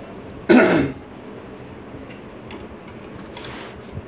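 A man clears his throat once, sharply, about half a second in, with a falling pitch; then only faint room tone and a soft rustle near the end.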